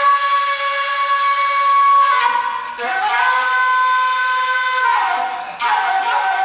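Fula transverse flute (tambin) playing long held notes, the pitch sliding down between them: one note for about two seconds, a slide into a second note held until about five seconds in, then another slide and a fresh note near the end.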